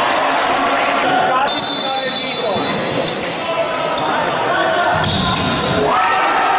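Futsal players shouting and the ball being struck on an indoor court, all echoing in a large sports hall. A long, steady, high referee's whistle sounds about a second and a half in, and a short one near the end.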